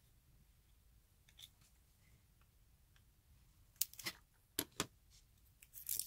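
A few sharp snips of scissors cutting open the seal on a small eyeshadow compact's packaging, coming about four seconds in.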